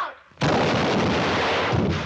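A loud gunshot on an old Western film soundtrack, going off about half a second in and followed by a long echo that fades near the end.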